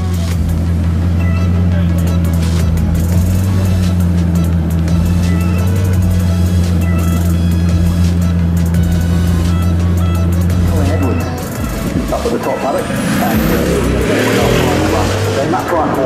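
Bugatti Chiron's quad-turbo W16 engine running with a steady low drone, then pulling away near the end as the sound turns rougher and busier. Crowd voices and background music are mixed in.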